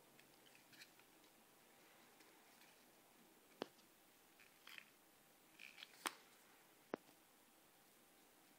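Near silence, with faint handling noise from a resin G-Shock watch being turned over in the fingers: small rustles and a few sharp clicks in the second half.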